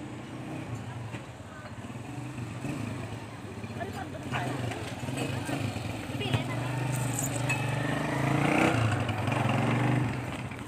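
Small motorcycle engine running steadily, louder in the last few seconds, as on a motorcycle tricycle.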